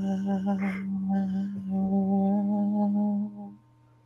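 A man humming a song that's stuck in his head, holding one steady low note while the tone colour keeps shifting, and breaking off about three and a half seconds in.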